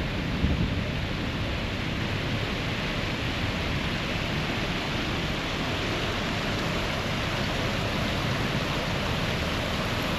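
Water spilling over the granite steps of a reflecting-pool cascade, a steady splashing rush.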